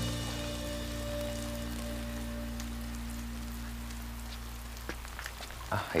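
Steady rain falling, under soft background music that holds one low sustained chord and fades away about five seconds in.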